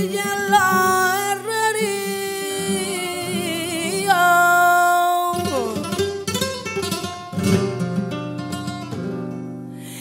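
Female flamenco singing (cante) with long, wavering, ornamented held notes over flamenco guitar. About halfway through, the guitar turns busier, with quick plucked notes and strums.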